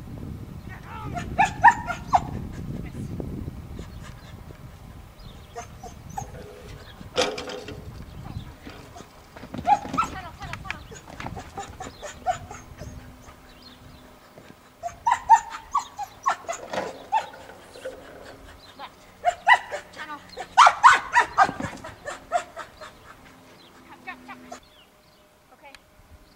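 A dog barking in several volleys of short, quick barks spread through the clip, the loudest volley near the end.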